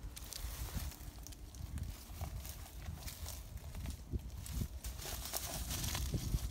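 A small dog's claws clicking and scraping on tree bark as it walks and clambers along a branch, in irregular taps and scratches over a low rumble.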